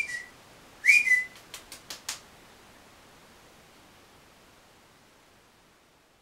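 Two short whistled calls about a second apart, each a quick high note that rises and then steps down a little, used to call a pet flying squirrel. A few light clicks follow, then only faint room hiss.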